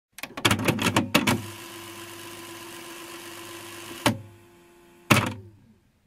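A tape player's mechanism: a quick run of mechanical clicks and clunks, then its motor runs steadily with a hum and hiss for about three seconds. A clunk comes about four seconds in, and a last loud clunk about a second later, after which the motor winds down with a falling tone.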